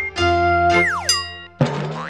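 Cartoon-style TV station ident jingle: a held synth chord over a deep bass note, with quick downward pitch slides about a second in. The chord cuts off, and a fresh chord is struck near the end.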